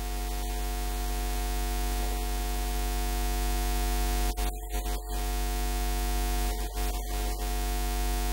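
Steady electrical mains hum with static hiss from a microphone and sound-system chain, with brief crackles about halfway through and again a little later.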